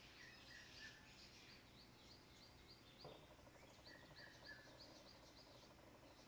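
Near silence, with faint bird chirps in the background: runs of short, quick high notes.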